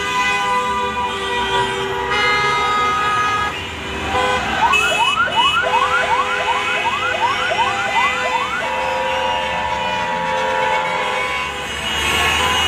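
Several car horns held and honking together in street traffic, in celebration. About four seconds in, a fast repeating rising siren yelp sounds for about four seconds, then long horn notes carry on.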